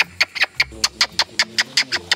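A person making a rapid series of clicking sounds with the mouth, about six or seven a second, to call capuchin monkeys.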